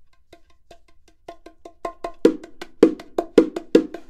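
Bongos played by hand in a quick, even run of soft ghost-note strokes. About halfway through, loud accented strokes come in among the soft ones, turning the exercise into a groove.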